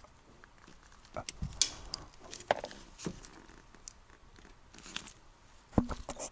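Hands working a small plastic two-component glue syringe: irregular light clicks, scrapes and rustles.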